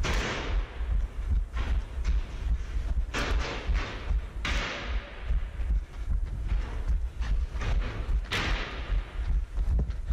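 Running footfalls from a head-mounted action camera: a steady rhythm of thuds with low buffeting on the microphone. A few bursts of rushing noise come and go.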